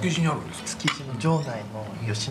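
Cutlery clicking and clinking against china plates as diners eat, with several sharp clinks and men's voices at the table.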